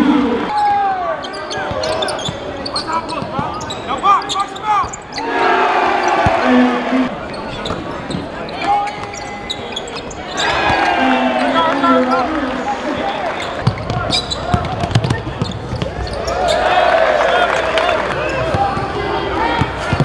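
Basketball game sound in a gymnasium: voices from the crowd and court with a basketball bouncing on the hardwood.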